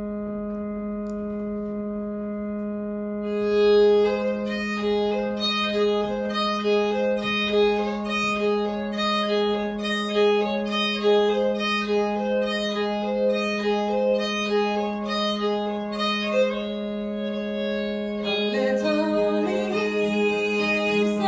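Fiddle and acoustic guitar playing the instrumental introduction to a folk song. One low note is held steadily as a drone, and about three and a half seconds in a tune enters over it, moving in a regular pulse.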